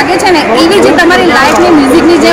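Speech only: a woman talking into a hand-held microphone, with people chattering in the background.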